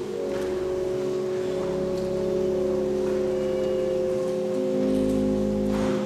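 Church organ playing slow, sustained chords. The chords change every second or two, with a deep bass note under some of them. A few faint knocks from people moving in the church.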